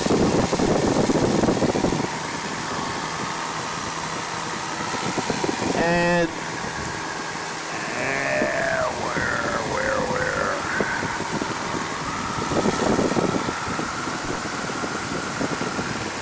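Steady drone of a 1940 Piper J3 Cub's 65 hp Continental A-65 engine and propeller in flight, with wind noise in the cabin. The drone drops a step about two seconds in, and brief wavering tones sound around the middle.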